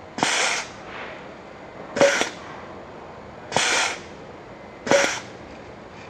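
Compressed air hissing out of a 5-way 2-position double-solenoid NAMUR valve's exhaust ports in four short bursts, roughly every one and a half seconds, as its manual overrides are pushed to stroke the pneumatic actuator one way and then back.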